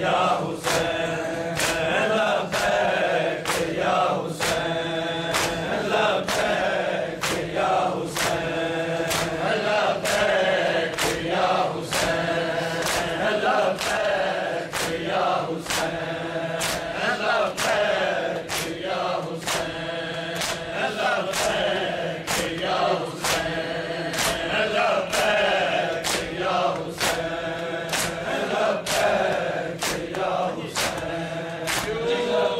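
A group of mourners chanting a noha together, with steady rhythmic chest-beating (matam) keeping time, the strikes falling a little more than once a second.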